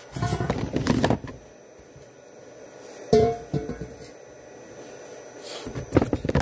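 Knocks and rattles of steel parts being handled and set down, with camera handling rustle in the first second. About three seconds in there is a sharp clank with a short ring.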